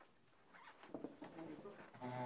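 Faint rustling and short scraping handling noises, starting about half a second in, with a low murmur of voices.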